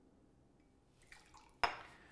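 Faint trickle of lime juice being poured into a glass, then a single sharp clink with a short ring near the end.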